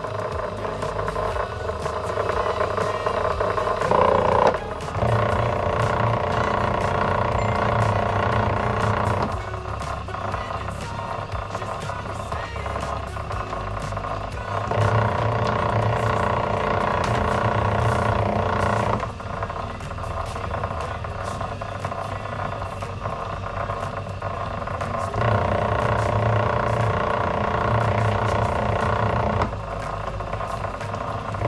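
Electric wire-stripping machine running steadily with a mechanical hum. Three times its sound grows louder for about four seconds, with light clicking throughout.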